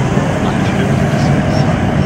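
Steady rushing wind on the microphone, together with road noise, while riding a bicycle through a road tunnel, with a faint voice underneath.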